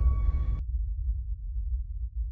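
RSL Speedwoofer 12S, a ported 12-inch subwoofer, playing a deep, low bass rumble from a film soundtrack, with nothing heard above the bass.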